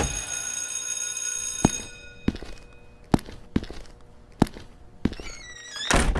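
A sudden hit with a ringing chord that fades over about two seconds, then about six sharp knocks on a hard surface, unevenly spaced, and a short rising swoosh near the end.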